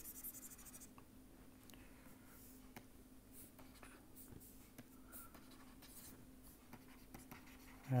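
Faint scattered taps and scratches of a stylus on a tablet screen, over a steady low electrical hum.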